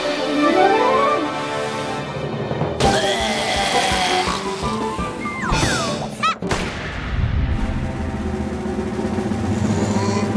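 Cartoon background music with comic sound effects: a rising whistle-like glide, a loud rushing burst about three seconds in, and then quick falling whistles.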